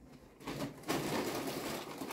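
A man's long, noisy breath through pursed lips, rising about half a second in and holding for about a second, as he copes with the burn of a super-hot chili he is chewing.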